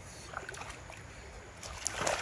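Shallow stream water lapping faintly under a low wind rumble on the microphone, then water sloshing and splashing builds up near the end as someone wades and works in the stream.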